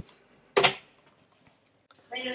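Shop door being opened: a small click, then a sharp clack about half a second in that dies away quickly.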